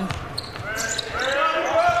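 A basketball being dribbled on a hardwood court, with voices over it in a large, echoing hall.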